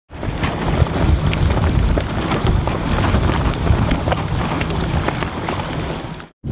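Wind buffeting the microphone aboard a sailing F18 catamaran, with water rushing past. The sound comes in just after the start and runs loud and rough, with a heavy low rumble and scattered crackles.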